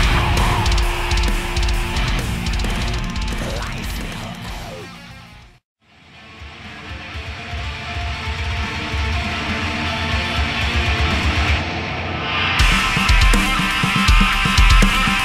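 Pre-production heavy metal recording with guitar riffs: one riff fades out to a moment of silence about six seconds in, then the next fades in and builds, with the full band and drums coming in loudly about a second before the end.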